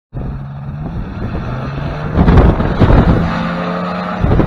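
Powered parachute's propeller engine running, with a steady low drone. It gets louder about two seconds in as the wing is pulled up into the air for takeoff, with gusty rumbling on the microphone.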